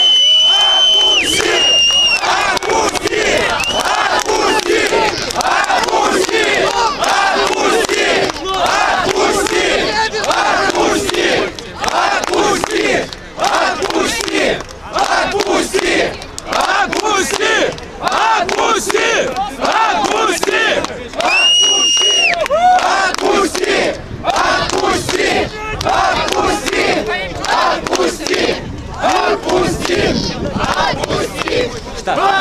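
A large crowd of protesters shouting together in a dense mass of voices. A shrill, steady whistle sounds for about two seconds near the start and again past the middle.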